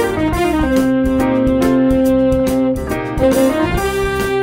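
A small jazz band playing a blues shuffle on saxophone, violin, electric guitar, piano, bass and drums. The melody falls at the start, holds two long notes, then climbs again near the end over a steady beat.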